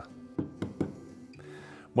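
A few light knocks from a hole saw and tool being handled over a wooden board, under faint background music.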